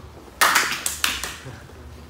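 A quick burst of hand claps: several sharp claps close together starting about half a second in and dying away by the middle.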